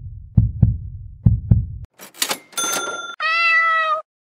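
Logo jingle sound effect: low double thumps like a heartbeat, about one pair a second, then a short noisy swish with a bright ringing tone, ending in a cat's meow held to the end.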